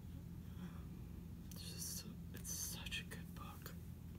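A woman whispering, breathy and without voice, in short phrases starting about a second and a half in, over a low steady hum.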